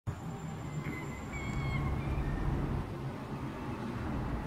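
Outdoor ambience dominated by wind rumbling on the phone's microphone, with a few faint thin high calls, like a small bird, in the first two seconds.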